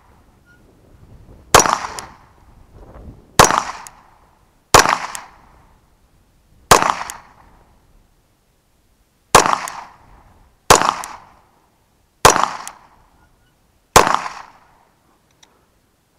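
Bersa Thunder 9 semi-automatic 9mm pistol fired eight times at a slow, uneven pace, about one to three seconds between shots. Each sharp report is followed by a short, fading echo.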